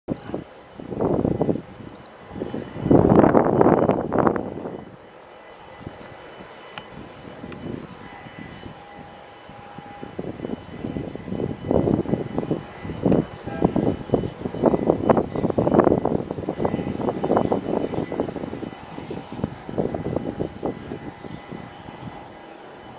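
Faint steady whine of a jet airliner heard across an airfield, under irregular loud rushing gusts that come and go, heaviest a few seconds in and again through the second half.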